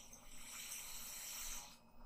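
A faint, soft hiss of breath, as from a long exhale through the nose, lasting about a second and a half.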